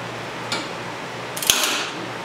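A light metallic click, then about a second and a half in a louder metal clink and rattle with brief ringing, as metal motorcycle parts and tools are handled around the chain and sprockets.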